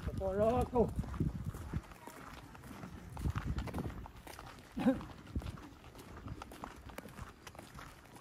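Horse hooves clip-clopping and footsteps on a dirt and gravel road, irregular and fairly quiet. A short wavering vocal exclamation comes right at the start, and a brief laugh about five seconds in.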